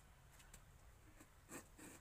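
Faint scrapes and knocks of bricks being handled and set in wet mud mortar, the two loudest close together near the end, over near silence.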